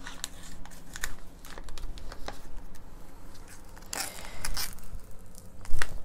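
Crinkling and crackling of a foil packet of self-hardening clay and the plastic sheeting under it as they are handled, with a louder knock near the end.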